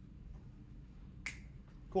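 A single short, sharp snap a little over a second in, over faint room tone.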